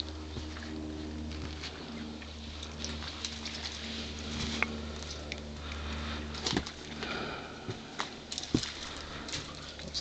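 Footsteps and hands scuffing and clicking on loose rock as a hiker scrambles up a boulder slope, with a few sharper knocks over a steady low hum.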